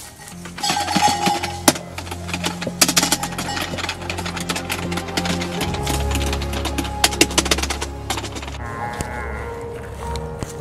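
Background film score music: sustained low notes whose bass shifts about halfway, with many sharp percussive hits over them and a wavering high note near the end.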